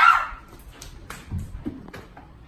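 A short, loud, high-pitched cry that fades within half a second, then a couple of dull thumps of running footsteps.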